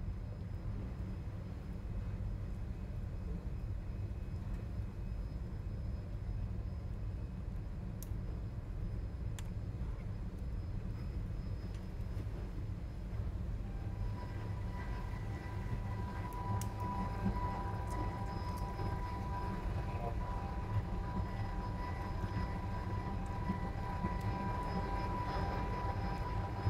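Steady low rumble of a ship's machinery, with a steady high-pitched tone joining about halfway through and a few faint clicks.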